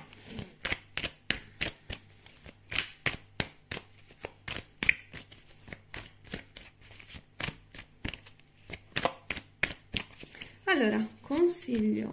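A deck of tarot cards being shuffled by hand: a run of quick, sharp card clicks, about three a second.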